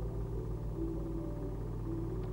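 A steady low hum on the soundtrack, with faint held music notes above it that change pitch about two thirds of a second in.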